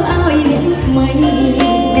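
Live band playing a Cambodian pop song: electric guitar, bass and drum kit, with a woman singing through a microphone and PA.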